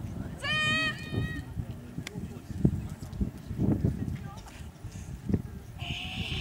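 A high-pitched, slightly wavering cry about half a second in, lasting about a second and broken in two, over a low rumble with a few short dull knocks.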